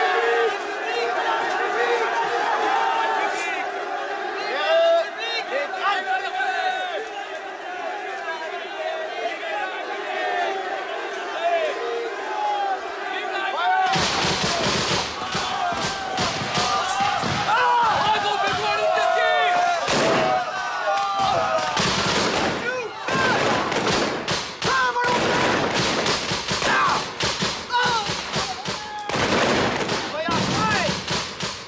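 A large crowd of men shouting as they advance. About fourteen seconds in, gunfire breaks out: repeated musket shots and cannon fire crack out irregularly over continued shouting and cries.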